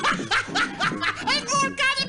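A cartoon character's gibberish voice chattering in quick, rising and falling syllables, close to snickering, over background music.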